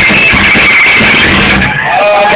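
Live rock band playing loud, captured as a dense, saturated wash by an overloaded recording. The high end drops away near the end.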